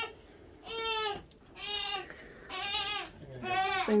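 A cat meowing over and over: four short calls, each under a second long and about a second apart.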